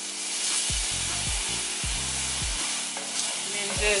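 Chicken pieces sizzling steadily in a hot cast-iron skillet, freshly seasoned with soy sauce. Near the end a wooden spoon stirs and scrapes them around the pan.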